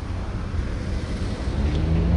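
Low rumble of road traffic with wind on the microphone. Near the end a vehicle engine comes in, rising in pitch and getting louder as it accelerates.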